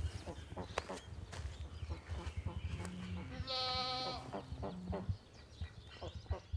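One drawn-out call from a farm animal, held at a steady pitch for under a second about halfway through, among scattered rustles and crunches of dry leaves underfoot.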